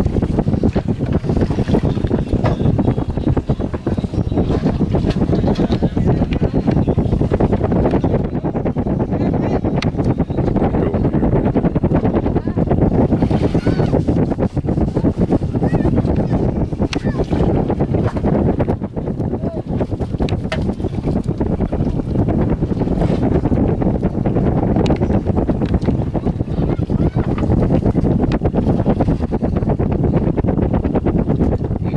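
Small gasoline engine of a motorized outrigger boat running steadily, mixed with wind on the microphone.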